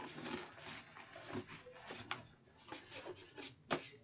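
Faint rubbing and rustling of paper being pressed and smoothed against the inside wall of a cardboard box, with a couple of light knocks, one about two seconds in and one near the end.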